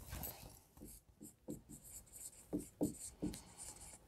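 Dry-erase marker writing on a whiteboard: a series of short, faint strokes as a word is written.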